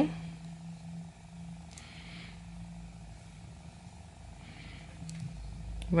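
Faint rustle of wool yarn drawn through crochet stitches with a yarn needle, twice, over a steady low hum.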